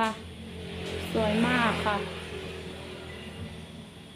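Low rumble of a passing motor vehicle that swells over the first second and fades away near the end.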